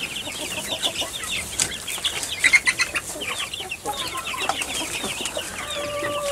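A pen of young chicks peeping continuously: many short, high chirps overlapping, several a second.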